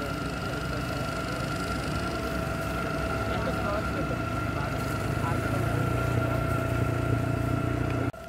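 A vehicle engine idling steadily, with a low rumble and a constant high whine, while people talk over it.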